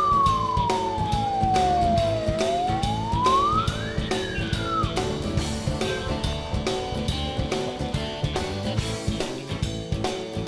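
Mini fire engine's siren wailing: a slow fall in pitch, a rise, then a short fall that cuts off about five seconds in. Background music with a steady beat plays throughout.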